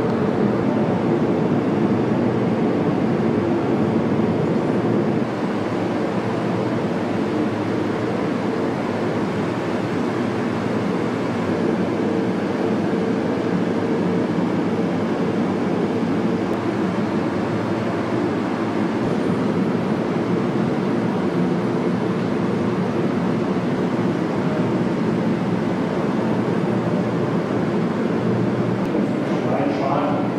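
A steady, loud drone with several held low tones, unbroken throughout; it drops slightly in level about five seconds in.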